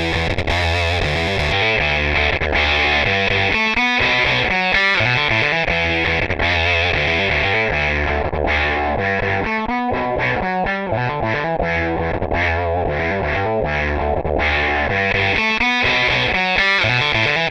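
Electric guitar riff played through a Walrus Audio Kangra octave fuzz into a VOX AC30 amp, thick and distorted. About a second and a half in, the filter section is switched in after the fuzz and the sound turns darker as the top end drops away.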